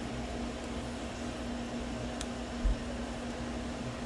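A steady low machine hum with fan-like noise. A small sharp click comes about two seconds in, then a soft low thump.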